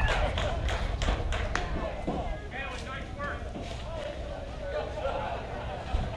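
Indistinct voices of softball players and spectators calling out, with a run of sharp claps or knocks in the first second and a half.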